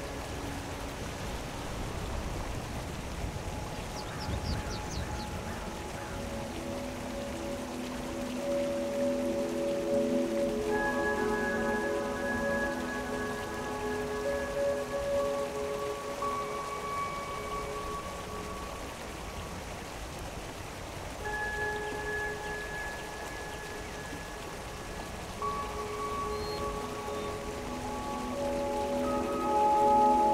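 Soft music of long, layered held notes over the steady flow of a shallow mountain stream; the music swells louder near the end.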